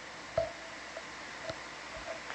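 Steady hiss of a ship-to-shore audio line between speakers, with a sharp click about half a second in and a fainter one near the end, on a link that is breaking up with intermittent gaps.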